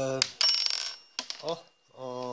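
A small metal washer clinks onto the workbench and rings briefly with a bright, high tone, fading within about a second. A man's short "oh" follows.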